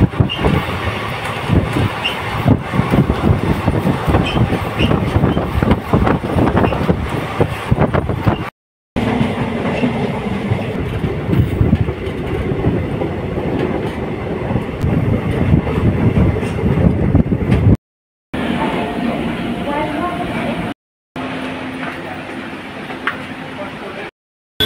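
Passenger train running, heard from a coach: wheels clattering over the rails under a constant rushing noise. The sound is broken by a few abrupt cuts, and the short last clips are steadier, with a few held tones.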